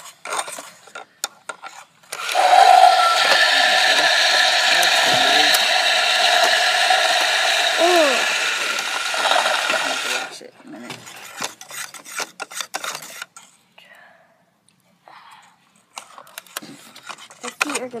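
Plastic toy toilet's flush running for about eight seconds, a steady flushing sound that starts suddenly about two seconds in and cuts off sharply. Before and after it, a spoon clinks and scrapes in the plastic bowl as the solution is stirred.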